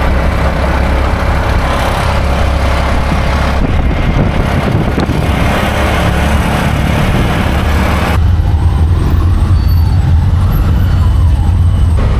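Auto-rickshaw engine running with a steady low drone under loud rushing wind and road noise, heard from inside the open passenger cab. The rushing noise drops away suddenly about eight seconds in, leaving mostly the engine drone.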